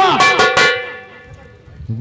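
An actor's amplified line ends about half a second in. A single held musical note follows and fades away over about a second, before the next voice comes in near the end.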